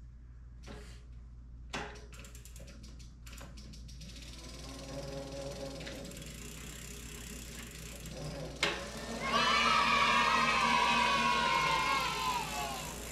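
Bafang BBSHD mid-drive motor run on the throttle with the bike standing still, spinning the rear wheel. The motor's whine comes in about four seconds in and gets much louder about nine seconds in, sinking slightly in pitch near the end.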